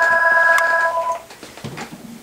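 A loud electronic ringing tone: several steady pitches sounding together that cut off about a second in.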